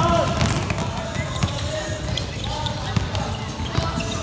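Many basketballs being dribbled at once on a hardwood gym floor, an irregular clatter of overlapping bounces.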